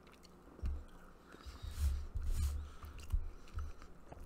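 A person chewing a mouthful of noodles close to the microphone: soft, irregular low thumps with faint clicks.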